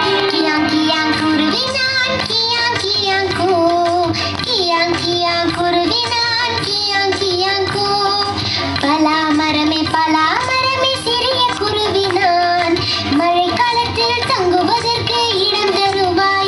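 A children's song playing, with a child's singing voice carrying the melody over instrumental backing.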